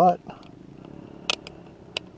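Two short, sharp clicks, the second about two-thirds of a second after the first, from handling the digital multimeter and its probe leads.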